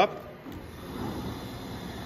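Abrasive brush heads of a QuickWood denibbing brush sander starting up on their variable-speed drive: a small click, then a whirring rush that builds over about half a second and holds steady.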